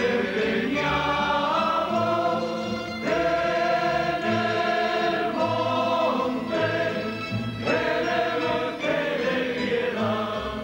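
A group of voices singing together in chorus, moving through long held chords.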